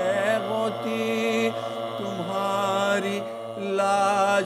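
Men's voices chanting a noha, a Shia Muharram lament, without instruments, holding long notes that waver in pitch. The chant dips in loudness briefly near the end.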